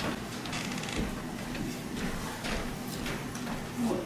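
Soft, irregular footsteps of a person crossing a stage, a few faint knocks over the steady hiss of a theatre auditorium.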